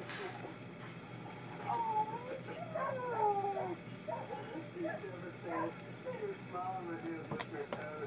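A baby babbling, a run of short high-pitched vocal sounds that slide up and down in pitch, with two sharp clicks near the end.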